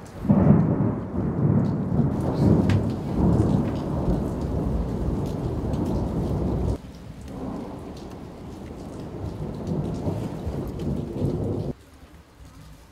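Thunder rumbling loudly for several seconds, then cutting off abruptly partway through. A second, softer rumble of thunder builds and cuts off suddenly near the end.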